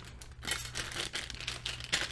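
Small plastic zip-lock bags full of Lego parts crinkling and rustling as they are picked up and moved, in several brief rustles.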